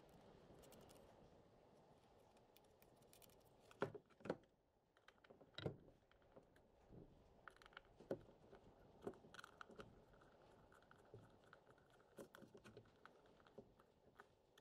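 Mostly near silence, broken by a few faint, short clicks and taps: a screwdriver driving the screws that fasten an hour meter to a plastic engine air-filter cover, and the cover being handled.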